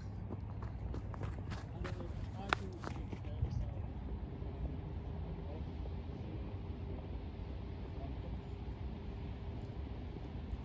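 Outdoor ambience: a steady low rumble of wind on the phone's microphone, with faint, indistinct voices in the distance. A few sharp footsteps on snow fall in the first few seconds as a runner jogs past close by.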